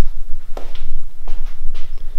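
Footsteps on a concrete garage floor: a few soft, uneven steps over a steady low rumble from the handheld camera being moved.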